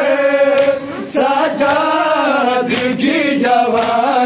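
Group of men chanting an Urdu noha, a Shia lament, in unison, in long drawn-out sung phrases.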